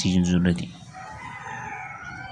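A faint, drawn-out bird call of several held pitches lasting nearly two seconds, beginning just after speech breaks off.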